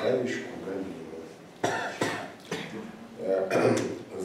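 A voice reading aloud, with what sound like two coughs in the middle.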